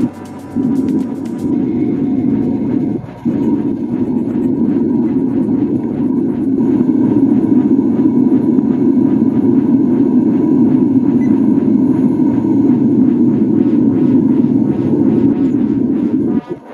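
Propane burner firing into a small crucible furnace: a steady low roar that holds throughout, with a brief dip about three seconds in.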